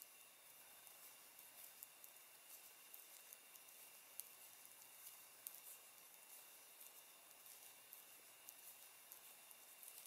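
Near silence with faint, scattered soft clicks and rustles of wooden knitting needles and yarn as stitches are purled.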